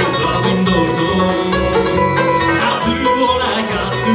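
Live acoustic bluegrass band playing a tune on banjo, mandolin, acoustic guitar, fiddle and upright bass.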